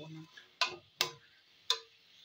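A metal spatula knocks three times against a kadai while stirring a stir-fry, sharp clicks under a second apart; the last knock rings briefly.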